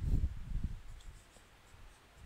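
Marker writing on a whiteboard with low bumps and rubbing from the writer's movement, fading to near quiet in the second half.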